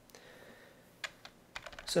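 A few keystrokes on a computer keyboard, short sharp clicks starting about a second in, over faint hiss.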